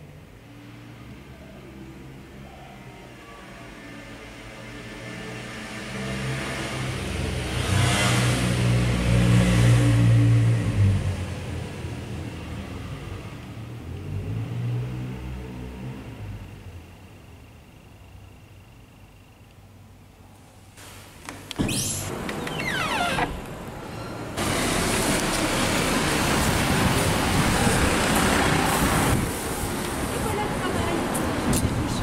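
Street traffic. A vehicle's low rumble builds, is loudest about a third of the way in, and fades away. A second, quicker pass comes about two-thirds through, and loud, steady street noise follows in the last few seconds.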